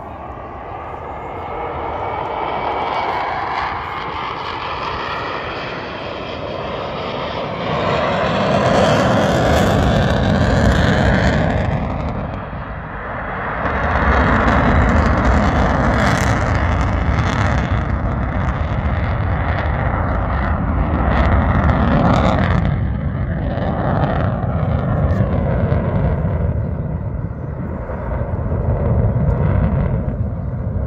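Jet aircraft flying past overhead, a loud, continuous rush and rumble that swells and fades, its pitch sweeping slowly as it passes. Wind is buffeting the microphone.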